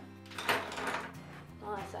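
Brief rustling and clattering handling noise, with a few soft knocks, as things are picked up and moved. Faint steady background music sits underneath.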